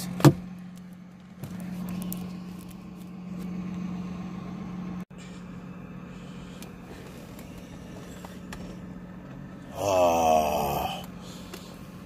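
Steady low hum in the cabin of a 2002 BMW 325Ci with its inline-six engine idling. A sharp click comes just after the start. Near the end a man's voice gives a short, drawn-out groan.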